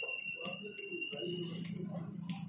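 Felt-tip marker squeaking on a whiteboard as numbers are written: a steady high squeal that stops about one and a half seconds in, with short scratchy pen strokes.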